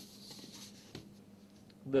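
Plastic set squares being slid and set down on drawing paper, a soft scraping rustle in the first half-second and a light tap about a second in.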